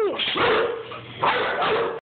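A dog vocalizing: a pitched whine falls away at the very start, then two rough, noisy vocal sounds follow, each under a second long, about a second apart.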